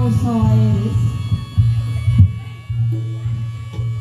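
Live Reog accompaniment music through loudspeakers: a pitched melody line slides downward in the first second over a steady low drone, with sharp drum strokes about a second and a half and two seconds in.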